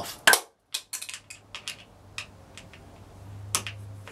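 Hand screwdriver loosening a screw on an aluminum storm door's spacer clip: one sharp click, then about a dozen small, irregular metal clicks and ticks.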